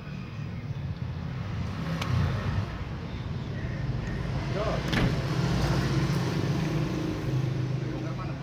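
Truck engine running steadily with a low hum, a little louder in the second half, with two sharp clicks about two and five seconds in.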